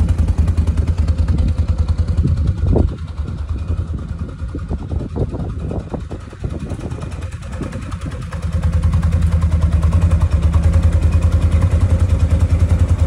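ODES Dominator Zeus side-by-side UTV engine idling with a low, evenly pulsing hum. It fades for a few seconds partway through, with some scattered knocks, and comes back louder about eight and a half seconds in.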